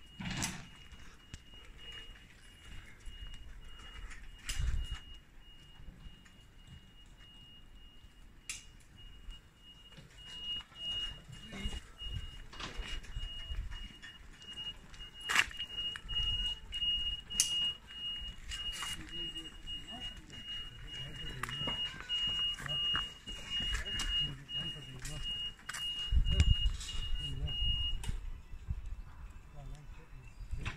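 A high-pitched electronic alarm tone sounding steadily, at times broken into rapid beeps, then cutting off abruptly near the end. Scattered knocks and low rumbles come and go over it.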